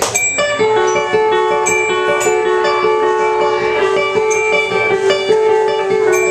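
Live indie rock band playing an instrumental passage: a repeating arpeggio of bright, ringing notes over long held lower notes from a bowed cello, with no vocals.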